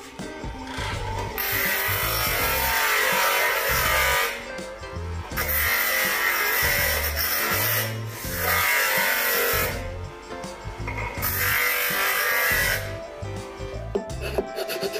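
Bench grinder wheel grinding a clear plastic lamp part in four passes of a few seconds each, the rasping noise starting and stopping as the part is pressed to the wheel and lifted off. Background music plays throughout.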